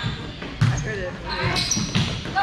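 A volleyball struck by players' hands twice, a sharp smack about half a second in and another near the end, during a rally, echoing in a large gym.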